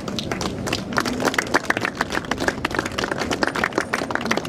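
A small crowd clapping: a round of applause made of many separate, irregular claps.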